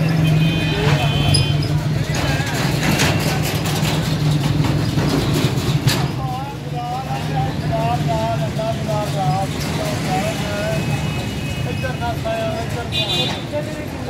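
Busy roadside street ambience: the steady hum of road traffic with an engine running nearby, people talking in the background, and brief high-pitched tones about a second in and again near the end.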